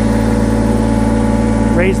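Kubota BX2380 subcompact tractor's three-cylinder diesel engine idling steadily.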